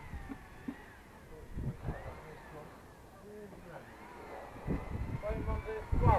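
Faint, distant talk between several people, growing louder near the end.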